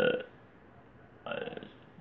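A man's drawn-out hesitation vowel ('eee') trailing off, then a pause and a short breath in just before he speaks again.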